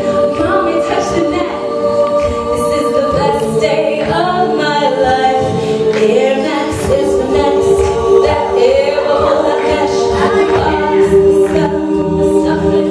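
All-female a cappella group singing live: sustained held chords from the backing voices with a solo voice bending in pitch above them, and short sharp percussive hits in the mix.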